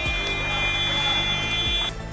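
Sports-hall game buzzer sounding one long, steady, harsh tone that cuts off suddenly near the end, over background music.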